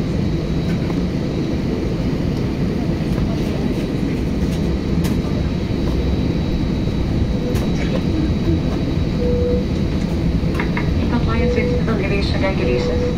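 Airliner cabin noise while the jet taxis on the ground: a steady low rumble from the engines at low thrust and the rolling wheels, with a faint steady high whine and a few scattered clicks. Voices come in near the end.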